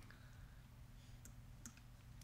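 Near silence: room tone with a low hum and a few faint clicks.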